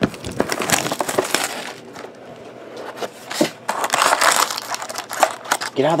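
Plastic shrink-wrap crinkling and tearing as it is stripped off a cardboard trading-card box, in irregular rustling bursts, with the cardboard box being handled and opened.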